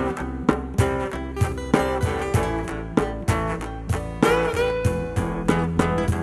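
Live acoustic band playing an instrumental passage, guitar-led with a steady beat, and a long held note a little past four seconds in.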